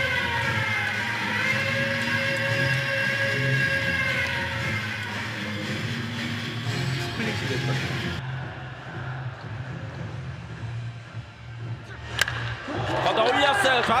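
Ballpark cheering music with fans in the stands, carried on a TV broadcast. It cuts to quieter ballpark sound, then a single sharp crack of a wooden bat on a pitched ball about twelve seconds in, followed by the TV commentator calling the hit.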